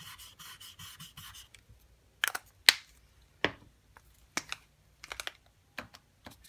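Posca paint-marker tip scrubbing on a surfboard in quick back-and-forth strokes for about a second and a half, about five strokes a second. Then come several separate sharp clicks and taps from the pens being handled, the loudest near the middle.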